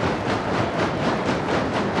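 A crowd stomping their feet on wooden bleachers in a fast, steady beat, over dense crowd noise. This is the film's sound design of the gym rally, the stomping that stands for Oppenheimer's dread.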